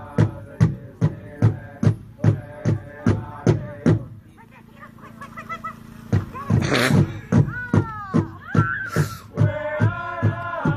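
Pow wow drum beaten in a steady beat, about two and a half strokes a second, with singers' voices over it. The drum stops about four seconds in, leaving high calls and shouts, then the drum and singing start again near the end, the stop-and-start of a candy dance.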